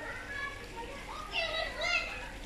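Young children's voices at play, with a child calling out twice in a high voice near the end.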